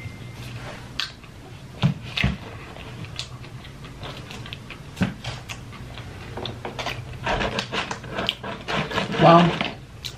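Handling noise: scattered light clicks and taps while a phone is held, then rustling and crinkling of paper food boxes as fried food is picked out. A brief voice sound comes near the end.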